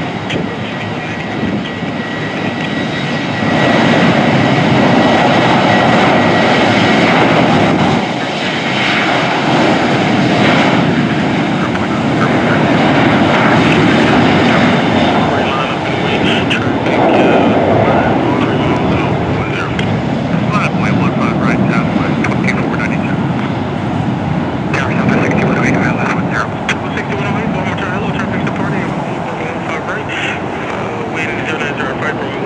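Boeing 737 airliner's jet engines at takeoff power during the takeoff roll: a loud, steady roar that swells about four seconds in and stays loud, rising and falling a little as the jet speeds down the runway.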